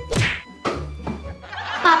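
A quick falling swoosh, then a sharp whack about half a second later, over light background music.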